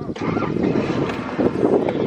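A car on the move, heard from inside: a steady low rumble of engine and road noise with wind.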